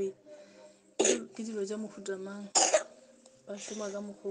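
A person coughing twice: one sharp cough about a second in and another about a second and a half later, with a voice speaking between and after.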